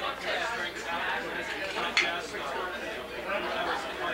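Crowd chatter in a bar: many voices talking over one another, with no music playing. One sharp click stands out about halfway through.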